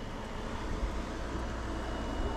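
Steady hum of a window air conditioner unit running, with a low rumble underneath; a faint thin high tone joins about one and a half seconds in.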